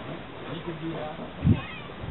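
Faint voices in the background with a short rising call near the end, and a single dull thump about one and a half seconds in.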